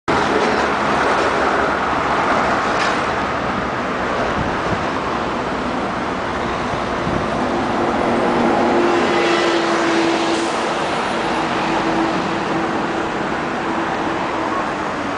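Steady road traffic noise on a city street, with one vehicle's engine hum standing out over it through the second half.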